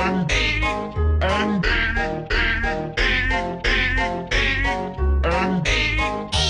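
A children's classroom song from an animated cartoon, run through heavy audio effects: warped, wavering singing over a steady beat.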